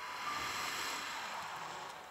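A cymbal swell on the drum kit: a wash of cymbal noise builds quickly and then fades away over the dying tones of a held piano chord.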